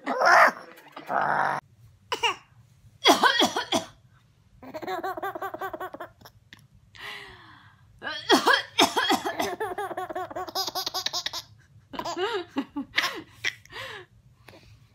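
An older woman laughing for about the first second and a half, then a baby boy laughing in repeated bouts of quick, pulsing belly laughs, set off by a woman's fake coughing.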